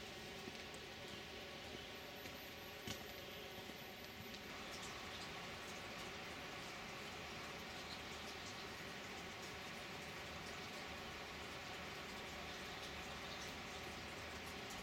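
Faint, steady outdoor background hiss with a single sharp click about three seconds in; the background changes slightly about four and a half seconds in.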